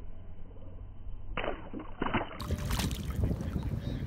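Wind rumbling on the microphone over shallow lake water, with soft water splashes and sloshing starting about one and a half seconds in.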